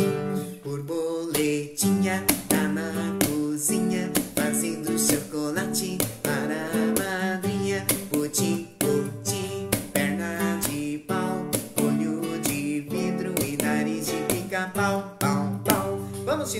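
Acoustic guitar strummed in a steady rhythm, playing a chord accompaniment as the introduction to a children's song.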